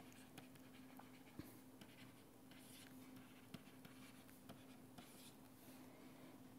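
Near silence with faint pen taps and short scratches of handwriting on a writing tablet, over a low steady hum.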